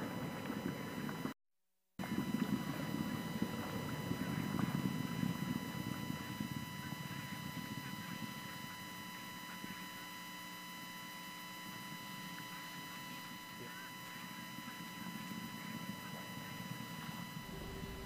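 Low rushing noise of a rocket-launch downlink feed from the Falcon 9 first stage's onboard camera, with several steady electronic whines running through it. The sound cuts out completely for about half a second near the start, and the rush eases a little after the middle.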